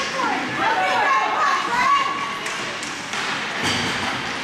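Ice hockey play in an indoor rink: players' voices calling out across the ice, with two sharp knocks of sticks and puck, one about two and a half seconds in and a louder one near the end.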